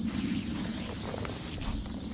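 Aerosol mosquito repellent being sprayed: a steady hiss.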